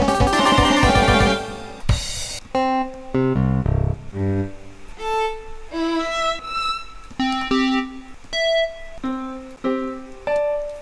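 MuseScore playing back a notated ensemble score with its built-in sampled instruments: a dense, fast mass of clashing parts for the first second and a half, then separate held chords and short notes with brief gaps between them.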